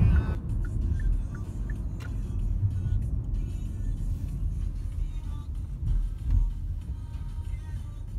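Road noise heard inside a moving car: a steady low rumble of engine and tyres, with faint music underneath.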